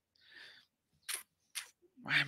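Two short, faint computer-mouse clicks about half a second apart, the press and release of dragging a picture into place. A faint hiss comes just before them.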